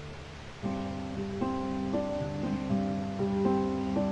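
Harp being plucked: the earlier notes die away, then a little over half a second in a new phrase of single plucked notes begins, each one ringing on under the next.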